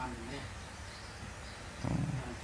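A lull in a man's talk: faint voice sounds, then a short, low, drawn-out voiced sound near the end.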